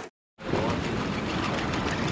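A brief silence, then steady rushing background noise of a boat out on the sea: wind, water and possibly an engine running.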